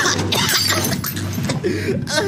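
A crash-and-shatter sound effect in a song's dramatised interlude, with sharp hits near the start and about halfway through, over a low bass that pulses about twice a second.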